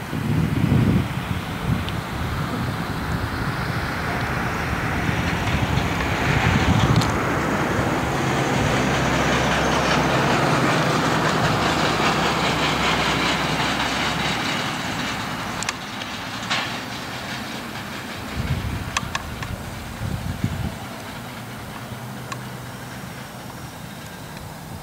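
Freight train coal cars rolling past on the track: a steady rumble and clatter of steel wheels on rail that fades away over the second half, with a few sharp clicks.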